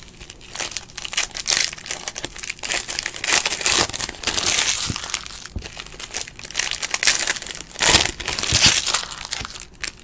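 Foil wrapper of a Panini Prizm football card pack crinkling in irregular bursts as it is handled.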